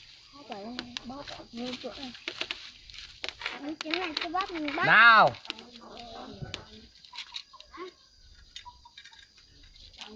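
People talking in the background, with one loud drawn-out call, rising then falling in pitch, about five seconds in; in the quieter second half, light clicks of steel bolts and nuts being handled.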